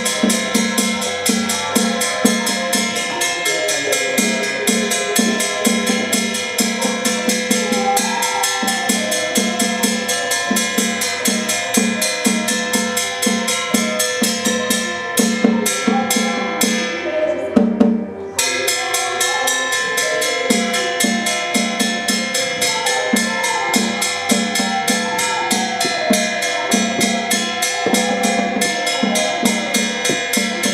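Taoist ritual percussion: a drum beaten in fast, steady strokes under the continuous ringing of gongs and cymbals. The metal ringing drops out briefly about 18 seconds in, then resumes.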